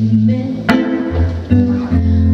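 Live band playing an alt-country song: electric guitar over steady low notes, with one sharp drum hit about two-thirds of a second in.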